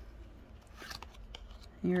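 Pokémon trading cards handled in the hands: faint rustling and a few light flicks of card stock as the cards are sorted.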